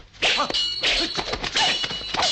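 Sword blades clashing in a film sword fight: a quick run of metal clangs and hits, with a high metallic ringing that sets in about half a second in and hangs on under the strikes.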